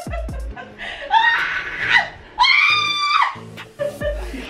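High-pitched voice crying out twice, the second cry long and held, over background music with a deep bass beat.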